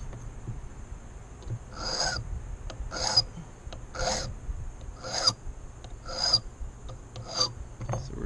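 A metal file rasping on a brass key blank, six even strokes about a second apart. It is deepening the number three cut while impressioning a key, to bring that cut down to the depth of a three cut.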